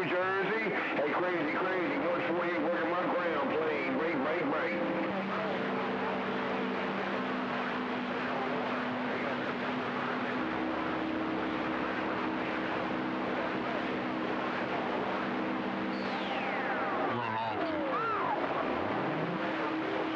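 CB radio receiving a crowded AM channel during skip: a steady wash of band static, several steady heterodyne whistles where carriers overlap, and garbled distant voices. Later on, a whistle glides down in pitch.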